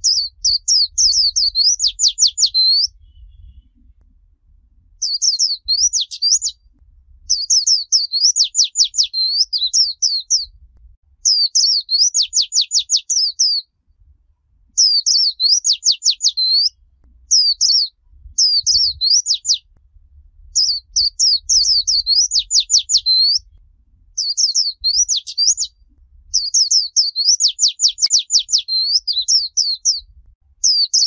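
White-eye song in the 'líu chòe' style: about nine high-pitched, rapid warbling phrases, each two to three seconds long and ending in a quick run of descending notes, repeated with short pauses between them.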